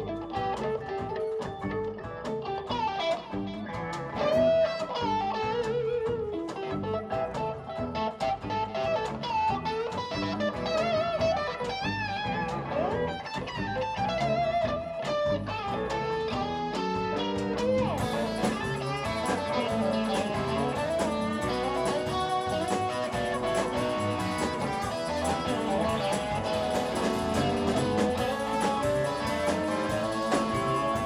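Live blues band playing an instrumental break: a lead electric guitar plays bent, wavering notes over drums and bass. About two-thirds of the way through, the band's sound gets brighter and fuller.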